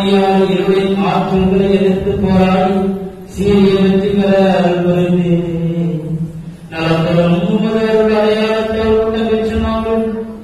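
A priest chanting a liturgical prayer on a nearly level reciting tone, in three long phrases with short breaks for breath, the pitch stepping up slightly in the last phrase.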